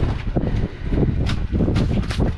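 Handling noise from a spiny rock lobster held in gloved hands: a few sharp clicks and scrapes over a steady low rumble of wind and boat.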